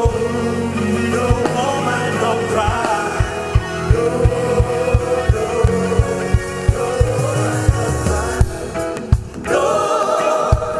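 Live band music played through an arena PA, with voices singing over bass, keyboard and a steady drum beat of about three hits a second. The music drops away briefly near the end, then comes back with held sung notes.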